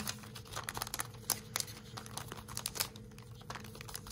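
Clear plastic cellophane sleeve crinkling in the hands as a card is slid out of it: a string of small, irregular crackles.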